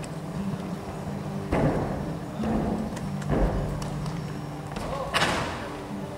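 A gymnast tumbling on a sprung floor: three heavy thuds about a second apart, then a sharper landing impact near the end, over steady background hall noise.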